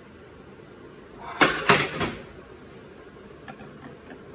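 A quick run of three sharp clacks of hard kitchenware knocking against a plate or counter about a second and a half in, then a couple of faint ticks near the end.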